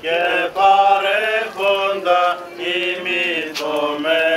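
Greek Orthodox Byzantine liturgical chant: voices singing long held notes in a slow, ornamented melody, in phrases that break off briefly and resume.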